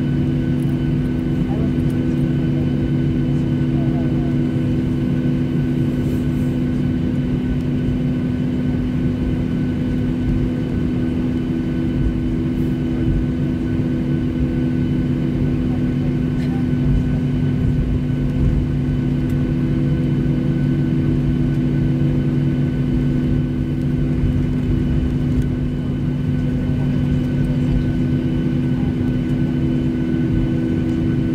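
Cabin noise inside a taxiing Boeing 737-600: its CFM56-7B engines at taxi idle, a steady hum with several steady tones.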